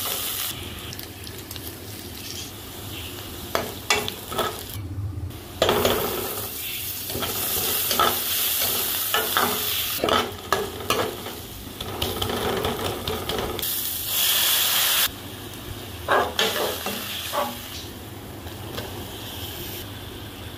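Sliced onions and cumin seeds sizzling in hot oil in a metal pot, with a steel ladle scraping and knocking against the pan as they are stirred.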